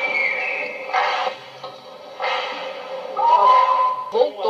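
Voices singing amid crowd sound at a religious ceremony, heard through a rebroadcast TV report, with a held sung note near the end.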